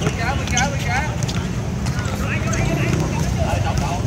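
Background voices of people talking and calling out across outdoor courts, over a steady low rumble, with a few sharp taps scattered through.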